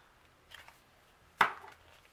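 Paper pages of a disc-bound planner being flipped, with faint rustles and one sharp click about one and a half seconds in.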